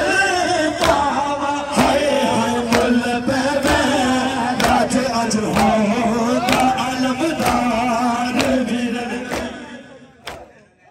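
Male voices chanting a noha (Shia mourning lament) over a steady beat of sharp strikes about once a second, fading out near the end.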